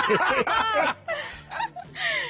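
A person laughing: a run of short laughs in the first second, tailing off into a few softer chuckles.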